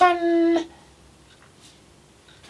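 A man's voice holding one drawn-out word at a steady, high pitch for about half a second. Faint room noise follows.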